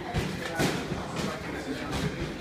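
A few short, sharp thuds and slaps from two boxers sparring in gloves, about four in two seconds, over faint voices in the gym.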